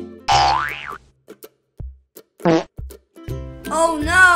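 Children's background music with an added cartoon 'boing' sound effect, a sweeping tone about a quarter second in. After it come short gaps and a brief pitched effect around the middle, and the music picks up again near the end.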